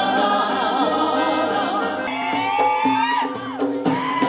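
A woman singing into a microphone with vibrato over accompanying music, with more voices heard with her. A long held note slides down near the end.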